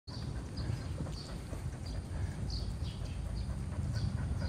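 A pointer dog panting over a low rumbling noise, with short high chirps that fall in pitch repeating about every half second.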